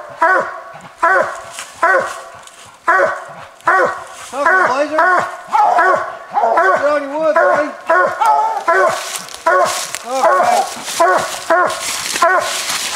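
Coonhounds barking treed, overlapping calls about one or two a second, the tree bark that tells the hunter a raccoon is up the tree. Rustling and scraping noise joins in near the end.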